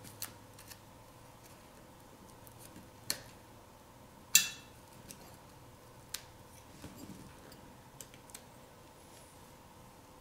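Small clicks and scrapes of a metal precision-knife blade picking at the phone's internals, with one louder, sharper metallic click about four and a half seconds in, over a faint steady hum.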